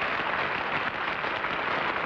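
Studio audience applauding steadily, the clapping of many hands as one even, unbroken sound.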